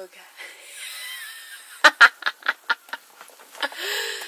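A woman laughing in a quick run of short, breathy giggles about two seconds in, after a soft hiss of handling noise.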